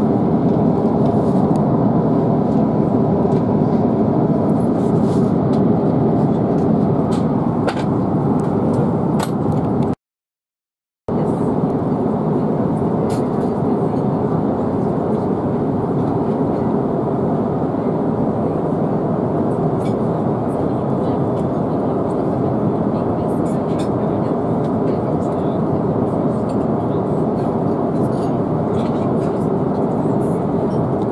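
Steady in-flight cabin noise of an Airbus A350-900, a constant rush of airflow and engine rumble. It cuts out for about a second around ten seconds in.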